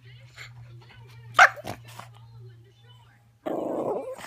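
Pet dog giving a single sharp, grumpy warning bark about a second and a half in, then a longer, rough, growly burst near the end.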